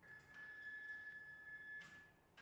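Wall printer's carriage drive motor giving a faint, steady high whine while it moves the carriage on slow precision jog from the touchscreen controls. A short rasp comes just before the whine stops near the end.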